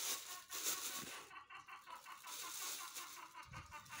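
Thin plastic bag crinkling and rustling as it is handled and opened and a leaf-wrapped food parcel is slipped into it, with faint irregular crackles throughout.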